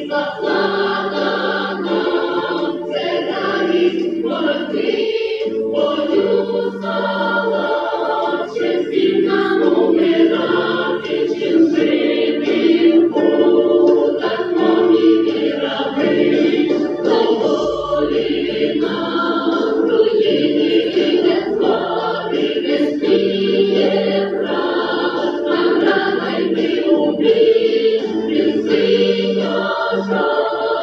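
A choir singing a slow hymn in long, held notes.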